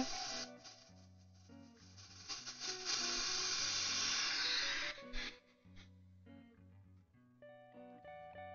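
Quiet background guitar music, with a steady hiss of air about three seconds in that lasts about two seconds and then cuts off: air let back into the vacuum chamber through its release valve after degassing plastisol.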